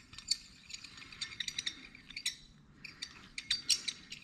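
Light metallic clicks and clinks of steel bolts, a stud and a nut being handled and turned by hand, in several quick clusters that are busiest near the end.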